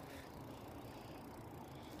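Faint, steady background hiss with no distinct sounds.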